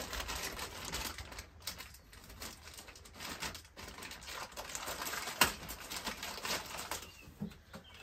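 Plastic bag packaging crinkling and rustling as a new pistol-grip grease gun is unwrapped by hand, with irregular small crackles and one sharper click a little past halfway.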